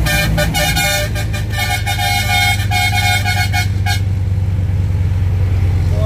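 Truck horn sounding a quick run of short toots of varying length, stopping about four seconds in, over the steady low drone of the tow truck's engine in the cab.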